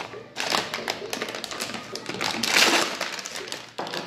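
Handling noise: a rapid run of taps, clicks and crinkles as sterilization pouches and steel dental instruments are moved about on a table.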